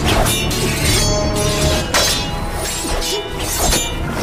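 Action-film fight sound effects: a quick run of sharp metallic clashes and crashing hits from a blade-and-pole fight, over background music.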